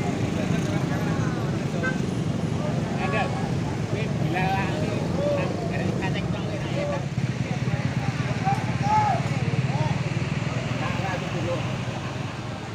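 Coach bus diesel engine running steadily at low revs as the bus manoeuvres slowly in reverse. Crowd voices chatter over it.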